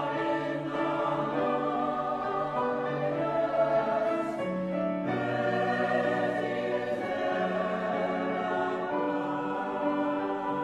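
A choir singing a Christmas anthem in long held notes, with the harmony shifting to new chords every second or two.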